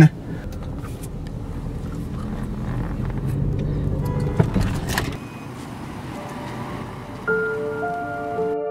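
Car engine and road noise heard from inside the cabin, growing louder over the first few seconds as the car speeds up, with a sharp knock about four seconds in. The car noise then drops away, and slow, sustained music notes begin near the end.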